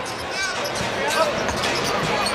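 A basketball bouncing on a hardwood court during live play, with short sneaker squeaks over a steady arena crowd murmur.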